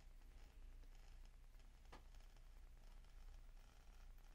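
Near silence, with faint scratching from a pen-style craft knife scoring adhesive screentone on paper and a single faint tick about two seconds in.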